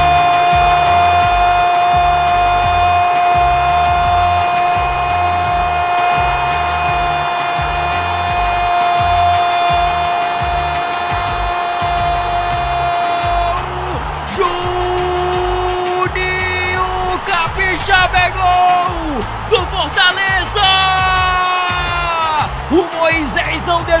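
A goal celebration from a Brazilian football broadcast: a long held 'gol' shout, kept at one pitch for about thirteen seconds, over celebration music with a steady beat. It then breaks into shorter shouted phrases that slide and fall in pitch, with the beat running on.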